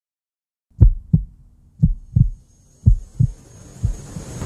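Heartbeat sound effect: low double thumps, lub-dub, about once a second, starting about a second in over a faint low hum, with a hiss swelling near the end.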